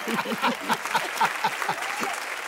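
Applause with voices mixed in, greeting a team's correct final answer in a word game.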